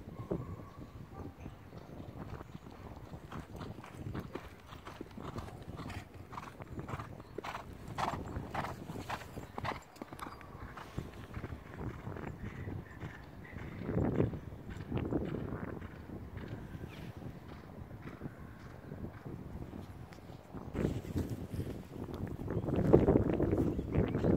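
Hoofbeats of ridden horses moving across a grass and dirt field, a run of irregular thuds that grows louder near the end as horses come close.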